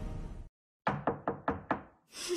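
Logo music fading out, then after a brief silence five sharp knocks in quick succession, about five a second, each with a short ringing tail.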